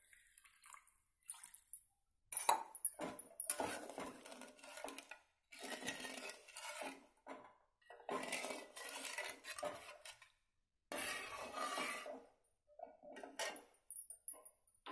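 Steel spatula stirring and scraping around a metal kadhai of thin, watery gravy, in about five bursts of a second or two separated by short breaks.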